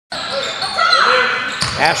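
Basketball game noise echoing in a gymnasium: court sounds and faint players' voices. A commentator's voice comes in near the end.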